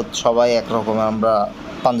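A man speaking in Bengali, with a faint steady background noise underneath.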